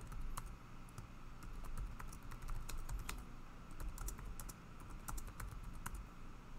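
Typing on a computer keyboard: quiet, irregular clicking keystrokes, over a faint low steady hum.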